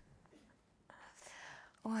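A soft breathy whisper lasting under a second, then a woman's short "ой" near the end.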